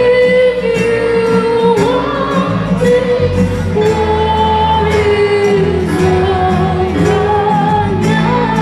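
A woman singing a held, slow melody with vibrato into a microphone, accompanied by strummed acoustic guitars in a small live band.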